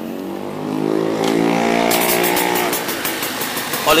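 Yamaha RX-King's 135 cc two-stroke single-cylinder engine running as the throttle is opened, its pitch rising slowly. A fast ticking rattle joins in about halfway.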